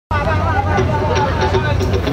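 A voice through a concert PA over a live band's held bass note and regular drum ticks, with crowd babble.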